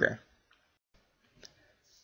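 A single soft mouse click about one and a half seconds in, in near silence after the last syllable of a spoken word.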